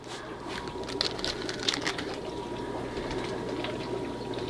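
A steady background hum and whir with a constant low tone, with a few faint crinkles and ticks from a small plastic sample bag being handled about a second in.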